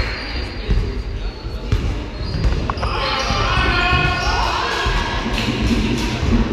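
Live game sound in a gym hall: a basketball bouncing on the hardwood floor, with players' and spectators' voices calling out. Near the middle, a few held, rising tones stand out above the thuds.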